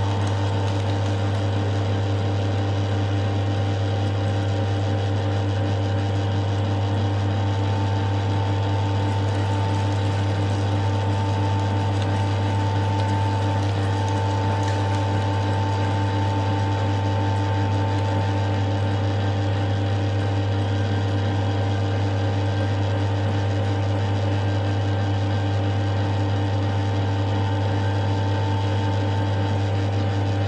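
Commercial stainless-steel electric meat grinder running steadily while beef trimmings are pushed through its plate into mince, its motor giving a constant low hum.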